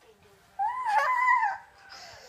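A toddler's high-pitched, drawn-out squeal, about a second long, rising and then falling in pitch.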